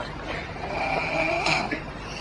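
A man snoring: one drawn-out snore of about a second and a half with a thin, high whistle running through it.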